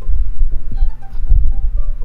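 Low, irregular rumbling throb with a steady low hum under it, typical of background noise picked up by a desk microphone.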